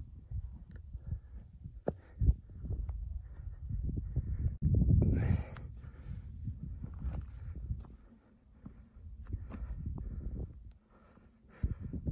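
Footsteps on stony, gravelly mountain-top ground, about two steps a second, over wind buffeting the microphone, with a louder gust of wind noise about five seconds in.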